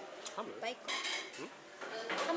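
Tableware clinking: a few short knocks of chopsticks and ceramic dishes, with faint voices in the background.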